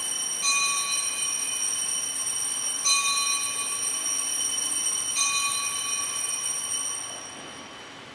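Altar bell rung at the elevation of the chalice, struck three times a couple of seconds apart, each stroke ringing on in several high tones and fading out near the end.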